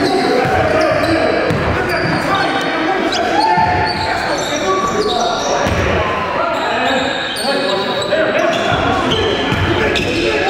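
Live sound of a basketball game in a gym: the ball bouncing on the hardwood floor amid indistinct players' voices, echoing in the large hall.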